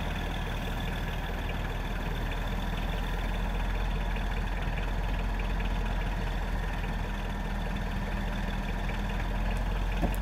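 Heavy diesel engine of a log truck running steadily while it powers the truck's hydraulic knuckle-boom loader lifting logs onto the load.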